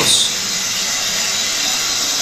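Steady background hiss filling the workshop, even and unbroken, with no rhythm or pitch.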